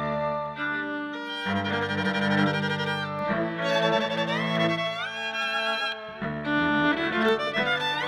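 A string trio of two violins and a cello playing: a violin melody with sliding notes over sustained low cello notes.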